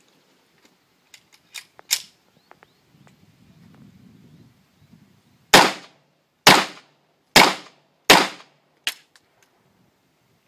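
Fort-12G gas pistol (9 mm P.A.K.) firing four sharp shots about a second apart, each with a short ring-out. A much fainter click follows just under a second later, the hammer falling on a cartridge that misfires.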